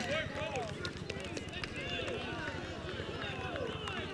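Indistinct chatter of several people talking at once, overlapping voices with no single clear speaker, with scattered light clicks.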